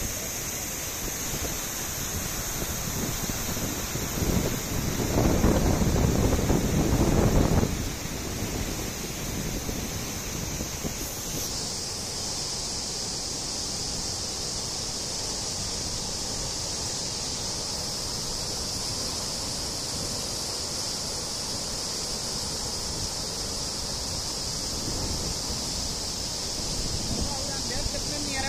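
Floodwater of the swollen Tapi river rushing over a broad weir, a steady heavy rush of water with a constant high hiss above it. A louder low rumble from about four to eight seconds in.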